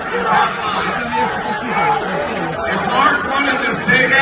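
Speech only: a man talking continuously, with background chatter.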